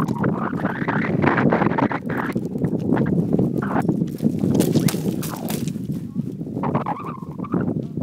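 Wind rumbling on the microphone, with crackling steps and handling noise on stony ground.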